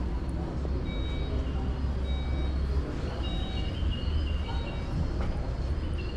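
Busy exhibition-hall ambience: a steady low rumble with a murmur of distant voices. Several short high tones sound about a second apart in the first half.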